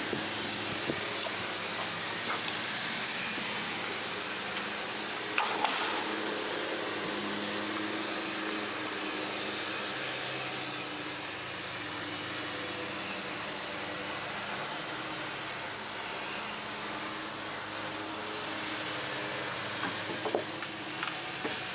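A steady machine hum with a hiss over it, like a fan running, and a brief click about five and a half seconds in.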